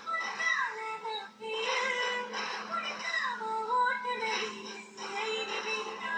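Song from a Tamil film trailer's soundtrack: a singing voice in sliding melodic phrases over backing music, with a short break about one and a half seconds in.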